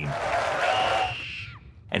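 A little girl's long, high scream over a cheering crowd. Both fade out about a second and a half in.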